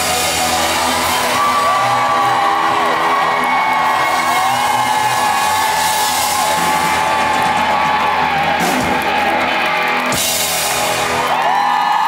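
Live rock band with drum kit playing the closing bars of a song, with cymbal crashes late on, while the audience whoops and cheers.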